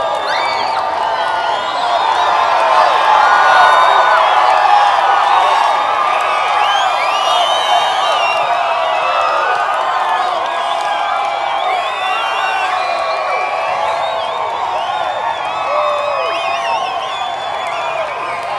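A crowd of many voices talking over one another, with a few higher calls rising out of the babble.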